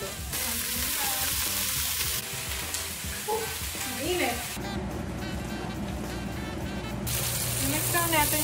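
Food sizzling as it fries in hot oil in frying pans (breaded chicken cutlets and burger patties, then buttered buns), a steady hiss that shifts in level with each cut. Background music plays underneath.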